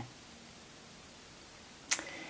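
Quiet room tone in a pause between sentences, ended near the end by a brief, sharp hiss of a quick in-breath just before speaking resumes.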